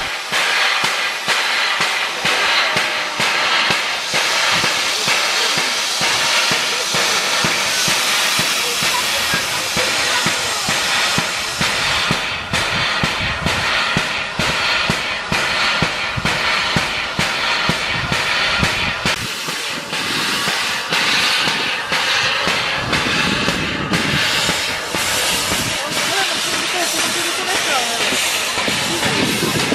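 Narrow-gauge steam locomotive hissing loudly and continuously as steam blows from its cylinder drain cocks.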